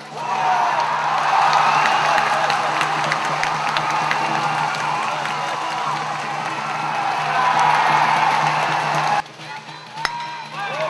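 Stands of a baseball crowd cheering and shouting loudly with cheering-section music, swelling just after the pitch and holding loud, then cut off abruptly about nine seconds in.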